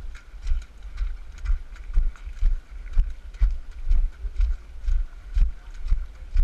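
Running footsteps on a muddy trail: a dull, even thud about twice a second, one for each stride.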